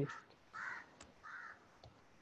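Faint background cawing, a bird giving several short harsh calls, and a single keyboard key click about a second in.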